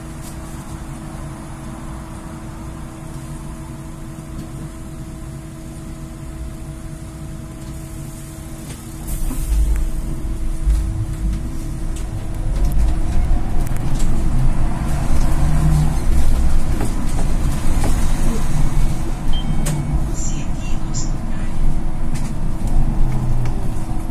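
Solaris Trollino II trolleybus standing still with a steady electric hum, then pulling away about nine seconds in. As it gathers speed the traction motor's whine rises in pitch over a louder rumble of the moving vehicle.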